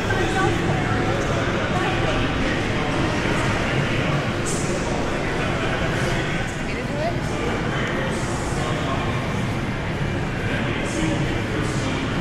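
Indistinct voices talking over a steady city hum in an open urban plaza, with a few brief scuffs.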